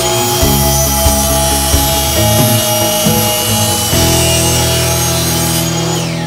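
DeWalt miter saw motor running at full speed and crosscutting a poplar board, with rough cutting noise over the motor's steady whine. The motor begins to wind down near the end.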